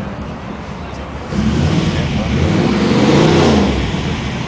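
A car engine revving up about a second in, growing louder and then easing off near the end.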